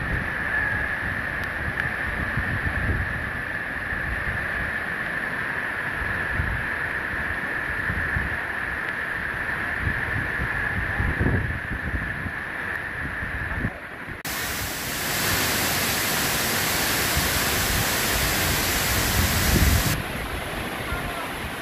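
Wind buffeting the microphone, with a steady high-pitched hum behind it. About fourteen seconds in, the sound cuts suddenly to the loud, even rush of a waterfall.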